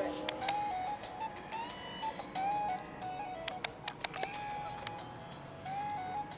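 Mobile phone ringtone playing a melody through the phone's small speaker, its notes stepping up and down in pitch, with scattered clicks.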